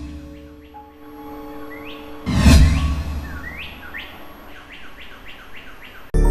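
Sound design of a TV channel's animated ident: a sudden loud hit about two seconds in over faint sustained tones, with short rising bird-like chirps that come in a quick run of about three a second in the last couple of seconds.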